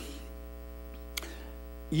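Steady electrical mains hum, a low buzz with many steady overtones, carried by the sound system in a pause between words, with one faint click a little past a second in.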